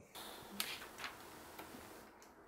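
Light handling noise: three faint, short clicks about half a second apart over a soft hiss.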